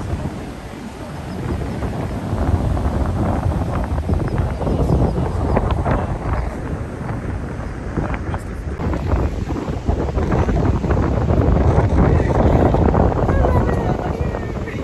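Strong wind buffeting the microphone: a loud, rushing rumble that swells and eases, loudest near the end.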